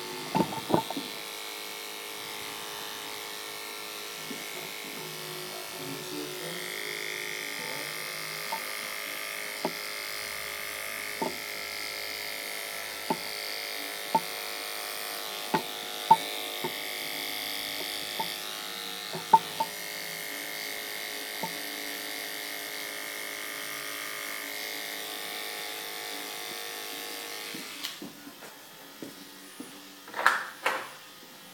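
Electric hair clippers buzzing steadily as they cut the short hair at the nape of the neck, with sharp clicks every second or two. The buzz stops near the end.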